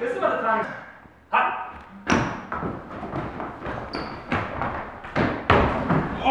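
Irregular heavy thuds of footsteps on wooden stairs and floor, with short bursts of men's voices in the first second or so.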